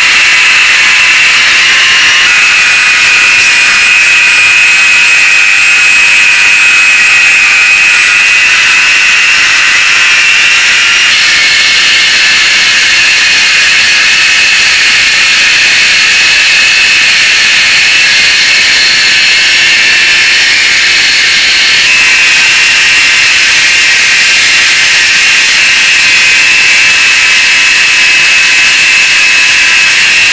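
Handheld rotary tool running at high speed with a steady high whine, its small bit grinding against a metal lighter tube. The whine steps slightly in pitch a few times.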